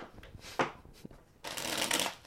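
A tarot deck being shuffled: a light tap about half a second in, then a short rustling burst of cards near the end.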